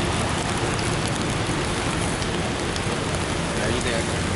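Steady rain falling, with scattered drops striking umbrellas held close overhead.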